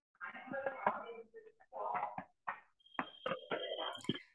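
Faint, broken-up voice of a participant coming through a poor video-call connection, muddied by background noise. In the last second a thin steady high tone sounds with a quick run of clicks over it.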